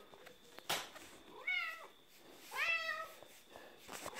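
Tortoiseshell cat meowing twice, each meow rising in pitch and then holding. A sharp click comes just before the first meow.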